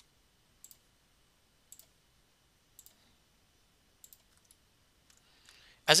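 Computer mouse button clicking four times, about a second apart, as faces of a 3D model are selected one by one. A few fainter clicks follow.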